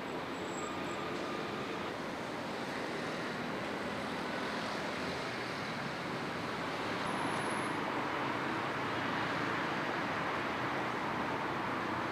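Steady city street traffic noise, growing a little louder about seven seconds in.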